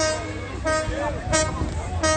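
Short horn-like toots repeated about every two-thirds of a second, over faint crowd voices and a steady low hum.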